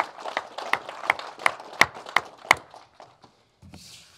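A small group applauding, with one pair of hands near the microphone clapping loudly and evenly, about three claps a second. The applause dies away about three seconds in.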